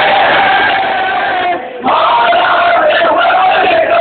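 A large crowd of mourners chanting a noha together in sustained, drawn-out lines, with a short pause a little under two seconds in before the chant picks up again.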